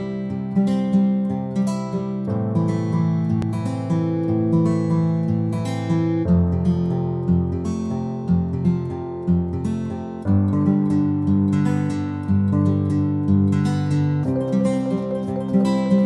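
Instrumental background music of a plucked acoustic guitar picking out notes about twice a second, the chord changing roughly every four seconds.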